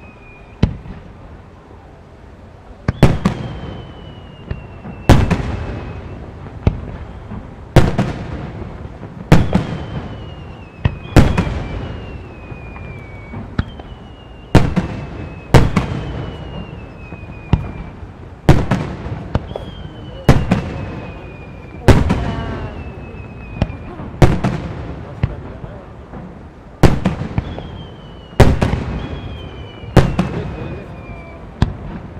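Japanese aerial firework shells bursting one after another, a sharp bang every one and a half to two seconds after a quieter first few seconds, each bang echoing away. Thin whistles falling in pitch lead into several of the bursts.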